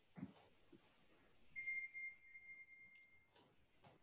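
Near silence: faint room tone, with a faint, steady, high-pitched tone lasting about two seconds in the middle.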